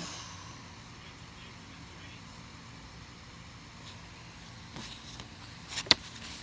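Faint steady hiss with a few light taps and one sharp click near the end, from a marker and the paper being handled.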